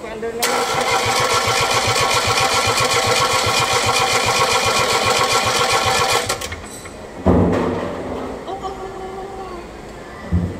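Starter motor cranking an Isuzu 3AD1 three-cylinder diesel: a steady whine over even compression pulses for about six seconds, then it stops without the engine catching. A hard start, with the fuel system still being bled of air.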